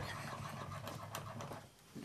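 Plane blade in a narrow-wheeled honing guide being stroked back and forth on an 8,000-grit waterstone: a soft, repeated scraping that dies away shortly before the end.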